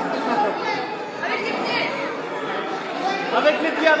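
Several voices chattering and talking over one another, with a man starting to speak French right at the end.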